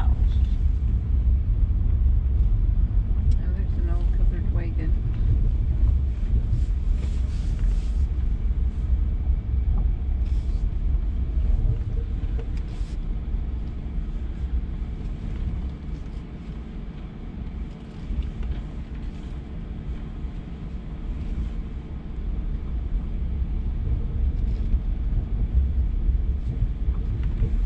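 Off-road vehicle driving along a rough dirt track: a steady low engine and road rumble with a few brief knocks from bumps, easing off for several seconds past the middle and then building again.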